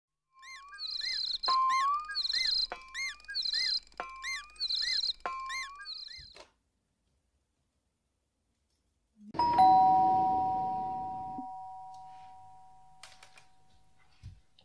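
A short jingle with a bright, chiming figure repeated about four times, then silence. About nine seconds in, a two-tone ding-dong doorbell chime rings, a higher note then a lower one, and rings out slowly.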